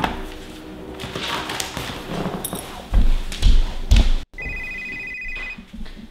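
Mobile phone ringing: a two-tone electronic ring lasting about a second, starting suddenly near the end, after several loud low thuds.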